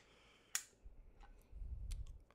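A few sharp clicks from a metal open-end wrench and a 3D-printed plastic caster housing being handled on a wooden bench, one about half a second in and one near the end, with a low handling bump in the last half second.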